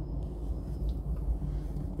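Low, steady vehicle rumble heard from inside a parked car's cabin.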